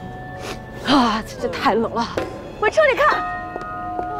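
Soft background music with held tones, and a voice sliding up and down in pitch in curved, wavering phrases from about a second in until about three seconds in.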